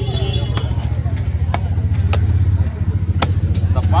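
A large knife chopping fish on a wooden log block: a few sharp knocks, unevenly spaced, over a steady low drone.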